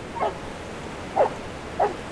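A dog giving three short, high yips, the last two closer together.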